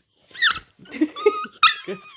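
A miniature pinscher mother guarding her newborn puppies gives about three short, sharp, high-pitched yelping cries as a hand reaches toward her.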